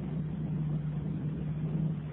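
Pause in a recorded sermon: a steady low electrical hum with faint background noise from the recording chain, no voice.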